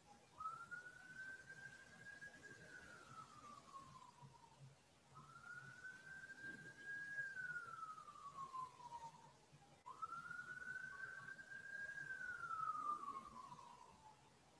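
A faint siren wailing: one tone that rises quickly to a high pitch, holds, then glides slowly down, repeating about every five seconds, three times over.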